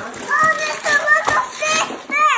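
Young children's excited voices, high-pitched and quick, exclaiming without clear words.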